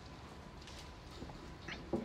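Faint drinking sounds, a man sipping from a glass, with a few soft clicks and a short, slightly louder knock near the end.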